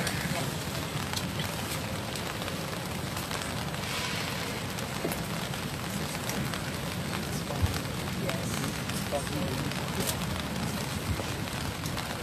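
Indistinct murmur of voices from a gathering over a steady noisy hiss, with a few faint clicks.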